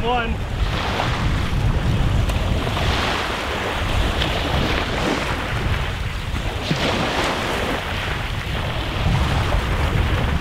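Small waves lapping and washing over rocks at the water's edge, with wind buffeting the microphone in a steady low rumble; a little louder near the end.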